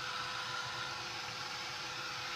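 Handheld craft heat tool running steadily: an even, airy whoosh with a faint hum beneath it.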